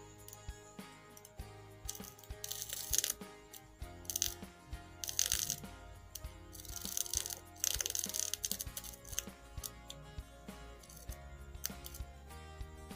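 Background music throughout, with repeated sharp clicks and several short bursts of crackling. These come from wire leads scraping on the commutator of an angle-grinder armature as a loudspeaker magnet makes it turn.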